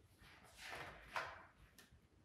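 Page of a picture book being turned by hand: a soft paper rustle, then a small click near the end.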